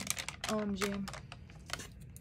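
Fingers pressing and tapping paper cutouts onto a journal page: a quick run of light taps and paper handling in the first second or so. A short hummed voice sound comes about half a second in.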